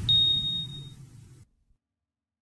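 News-channel logo ident sound effect: a single high ping that rings for about a second over a fading low rumble, all dying away by halfway through.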